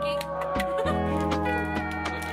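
Background music with a steady bass line and a regular beat.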